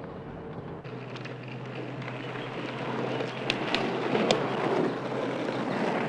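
Rushing road and wind noise from an open jeep on the move, growing slowly louder, with a few sharp clicks in the middle.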